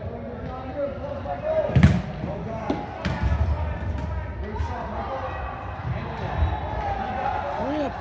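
Soccer ball impacts echoing in a large indoor field house: one sharp, loud bang about two seconds in, then a smaller thump about a second later, under distant shouts from players.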